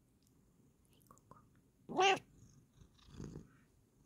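Bengal cat giving a short meow about two seconds in, its pitch rising slightly, with two faint chirps just before it and a softer, lower call about a second after.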